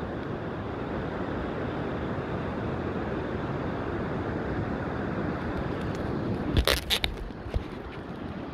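Steady rush of ocean surf and wind buffeting the phone's microphone. Near the end, a few sharp knocks from the phone being handled as it is swung around.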